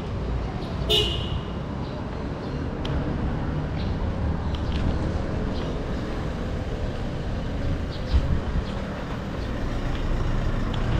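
Taxi horn giving one short honk about a second in, over the steady low rumble of street traffic.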